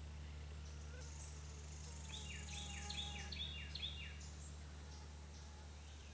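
A songbird sings a quick run of about six repeated notes starting about two seconds in, over a steady low hum and faint high chirping from the woods.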